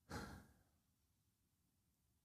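A man's single short breath or sigh right at the start, then near silence.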